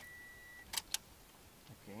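A short, steady high-pitched beep, then two sharp clicks about a fifth of a second apart, as a steering wheel with its airbag removed is turned by hand.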